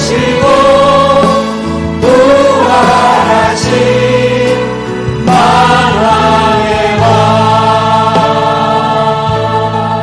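Korean Christian praise song: voices singing long held phrases over instrumental accompaniment, a new phrase starting about every three seconds.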